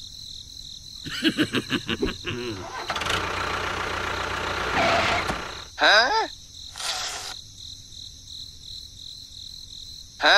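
Engine starting sound: a run of rapid sputtering pulses, then the engine catching and running as a steady rush for a couple of seconds. A short swooping pitched sound follows about six seconds in, then a brief burst, then it goes quieter.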